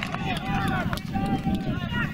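Footballers' voices calling out on the pitch during play, more than one voice heard in turn, over a steady low outdoor rumble.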